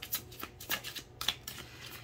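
Tarot cards being shuffled by hand: a quick run of short, irregular card flicks and slaps.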